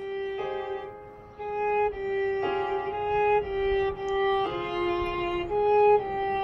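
Violin playing a slow line of held notes, each about a second long, some bowed as two notes at once.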